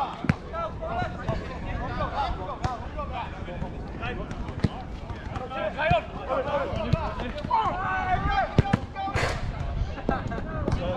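Players calling out to each other during a small-sided football match, with the thuds of a football being kicked several times.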